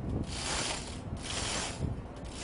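Hand-operated chain hoist being pulled hand over hand, its chain rattling through the hoist block in repeated surges as it lifts a missile canister.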